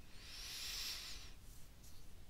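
A faint, soft hiss lasting just over a second, swelling and fading, followed by a brief faint click near the end.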